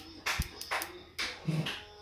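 Background music with a steady, evenly spaced percussive beat.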